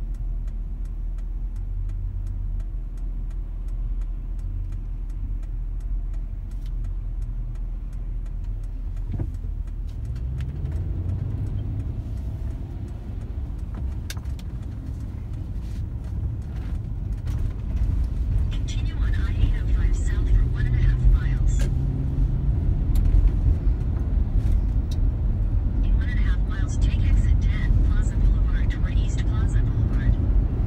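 Car engine and road noise heard from inside the cabin: a low, steady idle while stopped, then the engine and tyre noise grow as the car pulls away and accelerates up a freeway on-ramp, louder through the second half.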